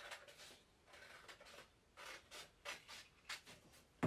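Scissors cutting through a sheet of paper: a series of faint, short snips with paper rustling.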